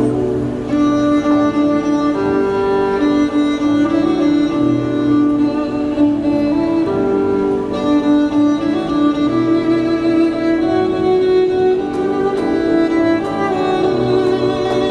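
Violin playing a melody in long held notes over a low accompaniment.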